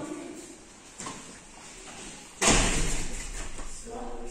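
A sudden loud thud about two and a half seconds in, followed by a second or so of rustling noise that fades away.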